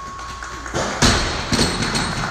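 Loaded barbell with rubber bumper plates dropped from overhead onto a lifting platform: one heavy thud about halfway through, then a smaller second impact half a second later as it bounces.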